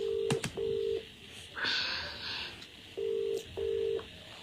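Telephone ringback tone on a line: a steady low beep in a double-ring pattern, two short beeps, a pause of about two seconds, then two more. A brief burst of hiss falls in the pause.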